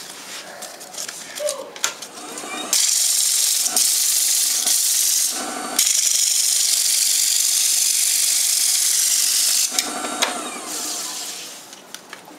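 Wood lathe spinning a segmented wooden ring while its rim is worked: a loud, steady hiss starts about three seconds in, breaks off briefly near the middle, and stops about ten seconds in. Light handling clicks and knocks come before it.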